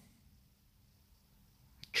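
Near silence: faint room tone with a low steady hum, and a small click just before the voice returns at the end.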